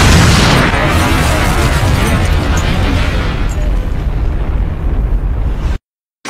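Explosion sound effect: a loud, deep rumbling blast that slowly fades, losing its hiss, then cuts off suddenly near the end.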